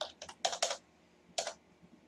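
Keystrokes on a computer keyboard entering a login password: a quick run of taps in the first second and one more tap a little past halfway.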